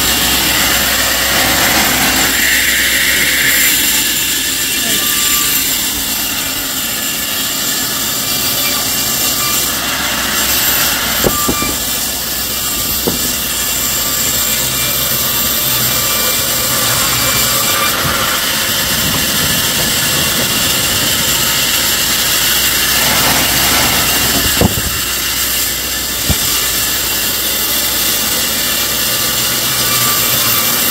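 Large sawmill band saw running steadily, a loud even whirr and hiss, with a few sharp knocks from the log carriage and timber.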